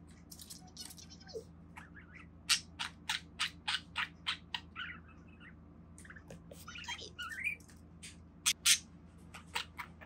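Budgerigar giving a series of short, sharp chirps, about three a second for a couple of seconds, with a few short warbled notes in between and two louder chirps near the end.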